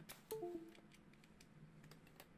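Windows USB device-disconnect chime as the camera's USB cable is pulled out: a short run of falling notes about a third of a second in. Light scattered clicks around it.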